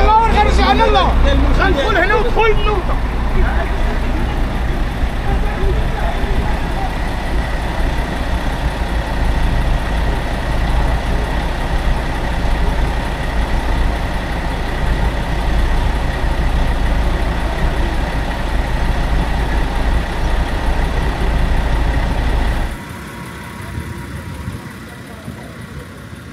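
Lorry engines idling close by, a steady low rumble. A group of men's voices sits over it for the first few seconds. The rumble drops off abruptly a few seconds before the end.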